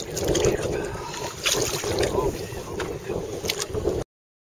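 Wind buffeting the microphone over water lapping and splashing at the side of a small fishing boat as a released silver bass swims off.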